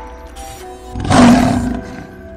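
A music sting of held notes with a lion roar sound effect about a second in, loud and lasting under a second.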